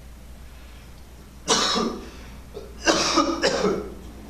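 A man coughing: one cough about a second and a half in, then a longer run of several coughs near the end.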